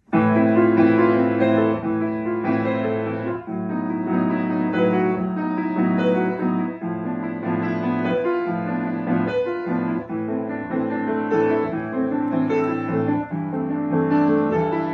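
Fazioli grand piano played solo, a dense run of chords and melody that starts suddenly out of silence.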